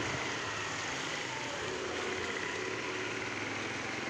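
Steady outdoor background noise, an even hiss and hum with no distinct events.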